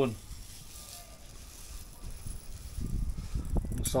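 Salt poured from a plastic container onto cut raw fish in a bowl, a soft, faint hiss. In the second half a low rumble of handling or wind on the microphone comes in, with a few light clicks near the end.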